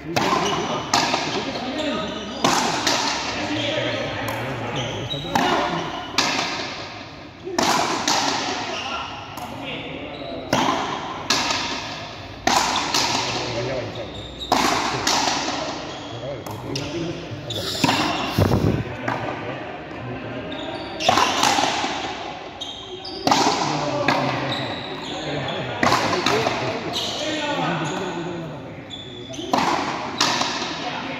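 Frontenis rally: a hard rubber ball struck by rackets and hitting the front wall and floor of the frontón, sharp cracks every second or so, each ringing on in a long echo around the large hall.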